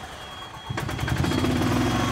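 An E-Z-GO TXT golf cart driving down the perforated steel ramp of a car-carrier trailer. There is a clatter of knocks about three-quarters of a second in, then a steady engine hum.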